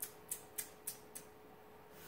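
A quick run of faint light clicks, about three a second, that stops a little over a second in, over a faint steady hum.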